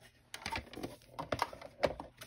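Irregular hard plastic clicks and knocks as a plastic paint palette and a plastic paint case are handled and set down on a cutting mat, with the sharpest knock near the end.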